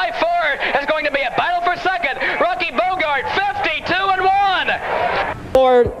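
A man's voice calling a harness race, fast and continuous. About five and a half seconds in it breaks off with a click, and another stretch of speech begins.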